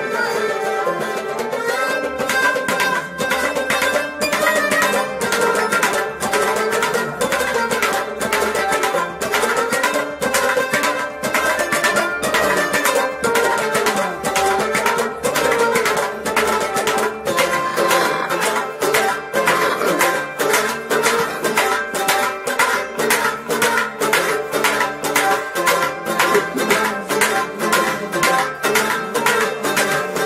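Kashmiri Sufi ensemble playing: harmonium, plucked rabab and a bowed string instrument over a clay-pot drum (noot) struck by hand in a steady quick rhythm. The drum strokes grow denser in the second half.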